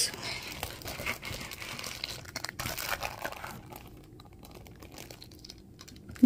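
Plastic Lego parts bags crinkling and rustling as they are handled and lifted out of a box, with small clicks. Louder over the first half, then fading to quiet handling.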